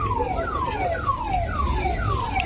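An electronic alarm sounding a rapid run of falling sweeps, a little over two a second, over a low background rumble.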